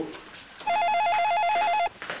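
A telephone's electronic ring: a fast warbling trill that rapidly alternates between two pitches. One burst of just over a second begins about a third of the way in.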